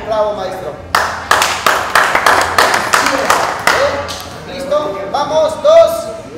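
Rhythmic hand clapping, about ten claps at roughly three a second, keeping time for a dance, followed by voices near the end.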